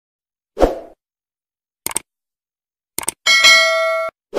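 Stock subscribe-animation sound effects: a low thump, then two pairs of short mouse-click sounds, then a bright bell chime that rings for under a second near the end.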